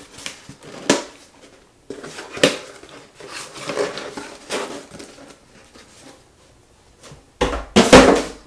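Perfume bottles and their packaging being handled: a few sharp clicks and knocks with soft rustling between them, and a louder thump near the end.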